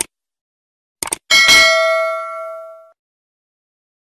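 Subscribe-button animation sound effect: a click at the start, two quick mouse clicks about a second in, then a single bell ding that rings out and fades over about a second and a half.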